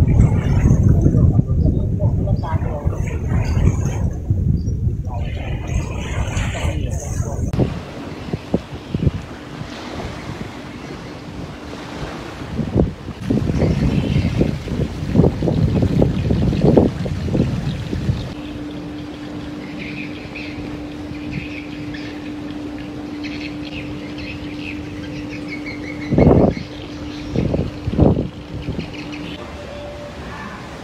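Outdoor ambience: low wind rumble on the microphone for the first several seconds, then, after a cut, indistinct voices and background noise. A steady low hum comes in past the middle, with two short knocks near the end.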